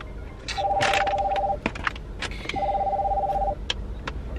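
An electronic two-tone ring, sounding twice for about a second each with a second's gap, over light clicks and rustling of handling.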